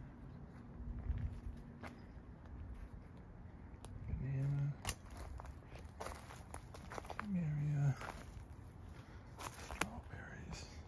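Footsteps on wood-chip mulch and garden soil, with scattered light knocks and a low rumble from the handheld camera moving. Two short hummed voice sounds come about four and about seven seconds in, the second falling slightly in pitch.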